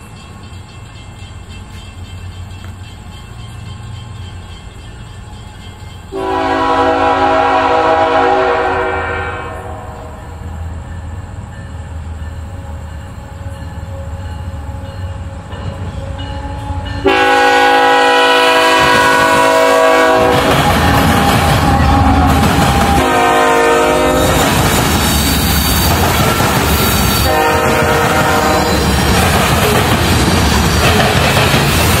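Diesel freight locomotive's air horn sounding as the train comes closer: a long blast about six seconds in, a second long blast near the middle, then shorter blasts. From about two-thirds of the way in, the locomotive and freight cars roll past close by with loud, steady wheel-on-rail noise.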